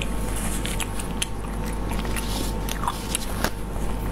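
Close-miked eating sounds: chewing with many short, sharp mouth clicks, mixed with tissue paper rustling in the hands, over a steady low hum.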